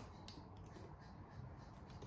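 Faint typing on laptop keyboards: a few soft, scattered key clicks over a quiet room.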